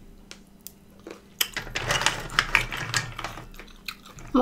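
Steamed apple snail shells clicking and clattering against one another and the enamel plate as a hand sorts through them: a few light clicks at first, then a quick dense run of clicks from about a second and a half in.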